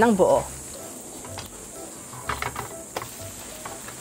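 Spatula working a thin egg omelette in a nonstick frying pan, with a few light clicks and scrapes against the pan over a faint sizzle of the egg cooking.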